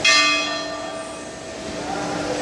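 A temple bell struck once, ringing with several clear tones that fade away over about a second and a half.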